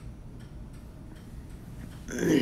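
Faint, regular ticking, about two ticks a second, over a low steady hum.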